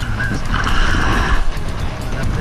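Background music with a wavering high melody over a low held tone.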